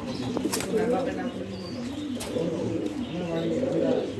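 Domestic pigeons cooing over and over in a wire cage, with two sharp clicks, about half a second in and again past two seconds.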